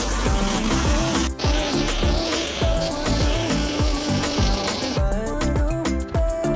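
Background music with a steady beat, over the hiss of water spraying from a garden hose nozzle into a plastic barrel. The spray briefly breaks about a second in and stops about five seconds in.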